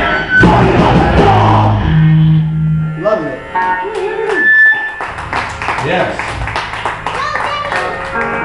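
A live punk band's electric guitar and bass hold a last chord that rings out and dies away about three seconds in. Voices talking in the room follow, with a short high steady tone near the middle.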